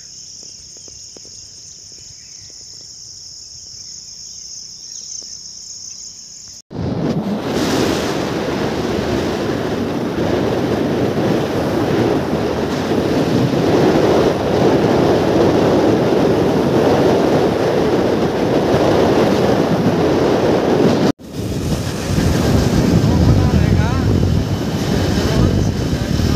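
Steady high-pitched chirring of crickets for about the first seven seconds. Then a sudden cut to loud wind rushing over the microphone with rumbling road noise from riding along a road, broken by a brief cut about twenty-one seconds in.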